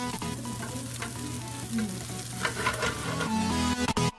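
Tofu scramble and potatoes sizzling as they fry in a skillet, with background music faintly underneath that comes back up near the end.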